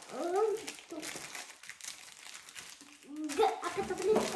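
Thin plastic packaging crinkling as hands work it open, in short faint rustles, with a little murmured speech.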